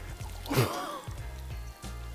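A large block of set jelly (gelatin) squelching wetly as it is worked out of its tub, one short wet squelch about half a second in, over background music.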